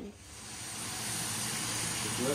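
Bacon sizzling in a frying pan: a steady hiss that swells over the first second and a half, then holds.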